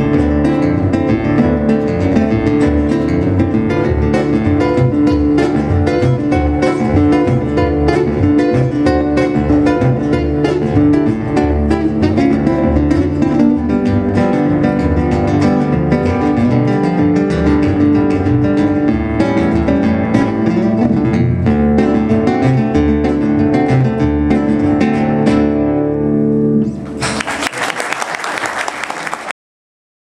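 Two acoustic guitars fingerpicking a fast instrumental country passage over a washtub bass line. The tune ends about 26 seconds in, and audience applause follows until it cuts off abruptly near the end.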